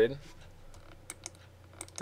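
Computer keyboard keys typed in a few light clicks, as a new number is entered into a software field.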